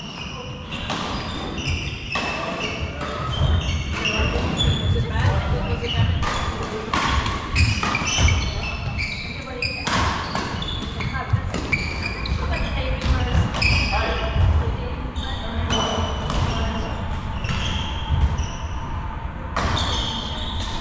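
Badminton doubles rally on a wooden sports hall floor: rackets striking the shuttlecock in sharp clicks, with many short squeaks from court shoes and thuds of footsteps throughout.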